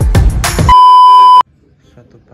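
Upbeat intro music that breaks off, then a loud, steady electronic beep lasting under a second that cuts off suddenly, after which it goes quiet.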